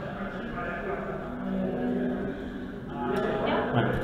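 Quieter male speech in a room, fainter than the talk around it, then a man's voice louder near the end.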